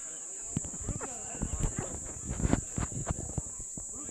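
Steady high-pitched insect buzz, with scattered soft knocks and clicks and faint murmurs close to a handheld microphone during a pause in speech.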